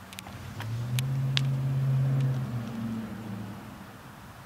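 A motor vehicle passing by: a low engine hum that swells up about half a second in, holds for a couple of seconds and fades away near the end, with a few light clicks early in the rise.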